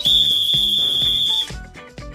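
A loud, steady high-pitched tone lasting about a second and a half that stops abruptly, over background music.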